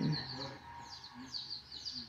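A brood of baby chicks peeping: a steady run of short, high peeps, each falling in pitch, several a second.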